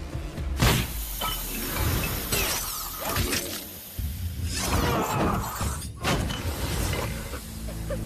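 Crashes of something shattering and breaking over background score music: a sudden crash about half a second in, more breaking in the middle, and a last burst that cuts off abruptly about six seconds in.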